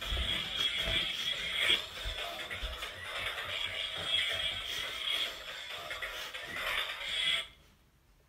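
Tinny music clip played through the small speaker of an iCarly sound-effects remote toy, cutting off suddenly about seven and a half seconds in.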